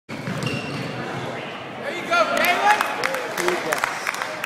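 A basketball being dribbled on a hardwood gym floor: repeated sharp bounces, mixed with short high squeaks and shouting voices from the game.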